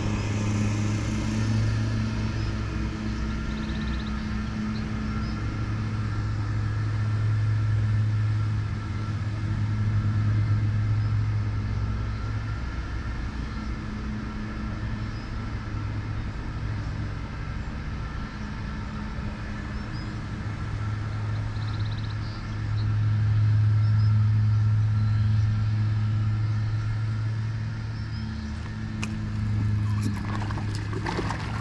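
Riding lawn mower engine running steadily, growing louder and then fading twice as the mower moves back and forth.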